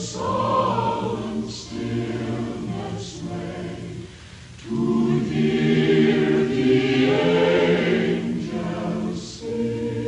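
Mixed choir of men and women singing a Christmas carol in harmony, holding long chords. There is a brief drop about four seconds in before a fuller, louder chord.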